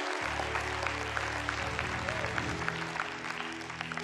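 A congregation applauding, with scattered claps that thin out toward the end, over soft background music of held chords. A deeper held note comes in just after the start.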